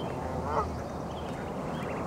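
Goslings peeping while they graze, with short high calls throughout. One louder, lower call comes about half a second in.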